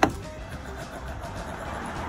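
A car door slams shut with one loud thunk at the start, followed by background music.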